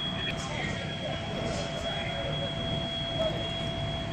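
Steady low rumble of fire apparatus engines running at the scene, with a constant high-pitched whine over it and faint voices in the background.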